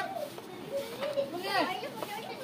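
Children's voices talking and calling out in short, high-pitched bursts.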